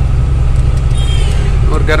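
Goods truck's engine and road noise heard inside the cab while driving at speed: a loud, steady low rumble.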